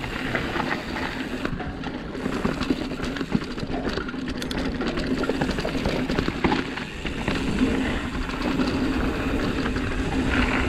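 Hardtail mountain bike descending a dry dirt trail: tyres rolling over dirt and loose stones, with the bike rattling and knocking over bumps. A steady buzz runs underneath, typical of the rear freehub clicking while the rider coasts.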